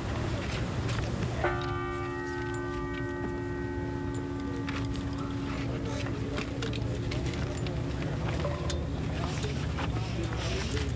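A large church bell struck once about a second and a half in, its hum ringing on for several seconds as it fades, a single stroke of a slow funeral toll. Under it runs the murmur of a large waiting crowd.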